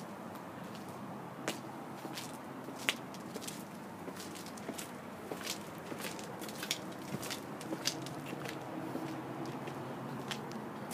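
Footsteps of a person walking on a concrete path: a series of light, irregular clicks over a steady background hiss.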